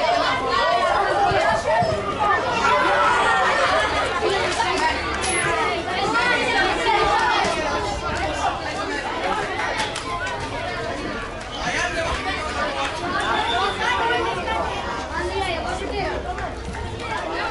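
Several people talking and calling out at once, a steady overlapping chatter of voices.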